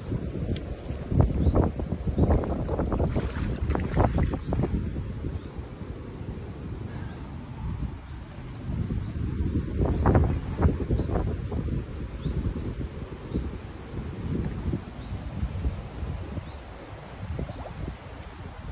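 Wind buffeting the microphone, with a hooked carp splashing at the surface close to the bank, a few seconds in and again about ten seconds in.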